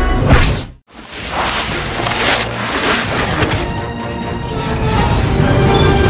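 Dramatic film-score music with whooshing sound effects. The sound cuts out suddenly for a moment about a second in, then the music comes back with several whooshes.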